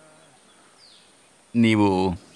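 A pause in a man's talk filled with faint outdoor background, with a single faint falling bird chirp about a second in. His voice resumes about a second and a half in.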